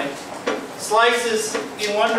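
A man's voice talking, with a single sharp knock about half a second in.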